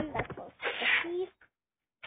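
A person's voice: short vocal sounds, then a breathy, hissing burst of about half a second that ends in a brief voiced note.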